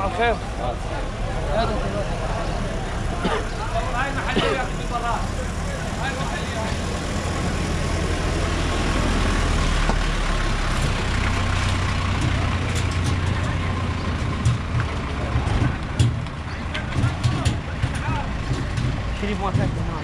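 Engine of a small flatbed truck running close by with a steady low hum that grows louder toward the middle and then eases off, amid market voices and scattered knocks.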